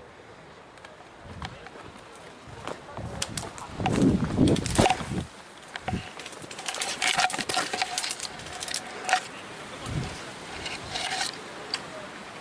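Branches and leaves rustling and snapping as someone pushes through dense scrub with the camera, with scattered sharp cracks of twigs; the loudest burst of rustling comes about four seconds in, with more cracks and rustling from about seven to eleven seconds.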